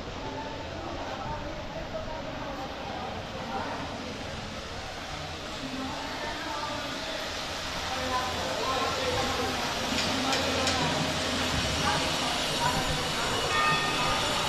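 Background voices over a steady rumbling noise that grows louder in the second half.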